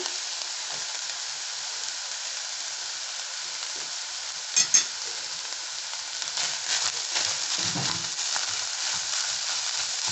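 Minced beef, onions, garlic and cumin seeds sizzling steadily in hot oil in a pan over high heat. There are two sharp clicks a little under halfway, and in the last few seconds a spatula stirs and scrapes through the mix.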